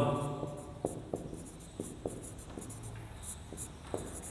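Marker pen writing on a whiteboard: a run of short, faint, scratchy strokes with a few light taps of the tip on the board.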